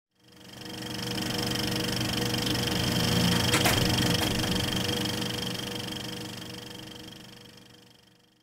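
Sound effect of an old film projector running: a fast mechanical clatter over a steady hum. It fades in during the first second and fades out toward the end, with a sharp click about three and a half seconds in.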